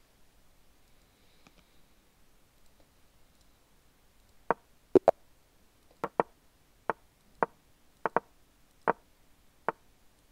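Chess.com's piece-move sound effects: sharp wooden clicks as moves are played in quick succession. There are about a dozen, starting about four and a half seconds in, some coming in rapid pairs.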